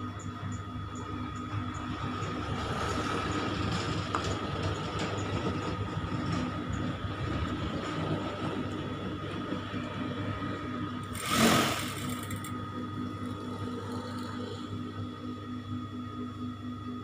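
Industrial flatbed sewing machine running with a steady motor hum while fabric is stitched. A brief, louder rush of noise comes about eleven seconds in.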